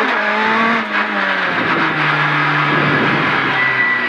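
Citroën C2 R2 Max rally car's four-cylinder engine heard from inside the cabin as the car slows off the throttle. Its pitch falls, breaks briefly about a second in, then settles to a lower steady note.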